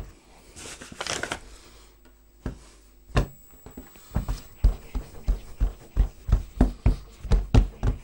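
Hands kneading a yeast dough on a wooden worktop: soft thumps and slaps of dough pressed against the board, a few scattered at first, then settling into a steady rhythm of about three a second.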